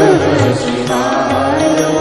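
Devotional Shiva bhajan: a male voice sings long, wavering notes over instrumental accompaniment with a steady low drum beat about twice a second.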